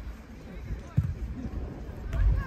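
A football kicked once: a single dull thump about a second in, over faint voices on the pitch.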